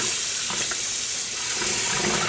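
Kitchen tap running into a plastic basin of water, with splashing and sloshing as a skein of wet yarn is worked and lifted in the rinse water.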